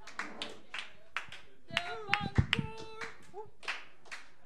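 A small audience applauding with sparse, uneven claps. A couple of short voices call out about halfway through.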